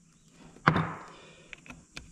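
A single sharp metal clank about two-thirds of a second in, fading over half a second, then a few light clicks near the end: metal parts of a rack-and-pinion steering housing being handled as its adjuster plug and spring are taken out.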